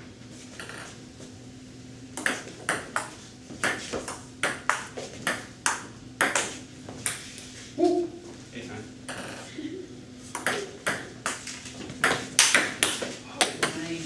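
Table tennis ball being hit back and forth in a rally, sharp clicks of paddle and table strikes about two to three a second, starting about two seconds in and getting louder near the end. A steady low hum runs underneath.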